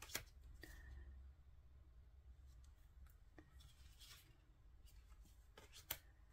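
Very quiet handling of tarot cards: soft slides and taps as cards are turned over and laid down, with a sharper tap just after the start and another just before the end, over a low room hum.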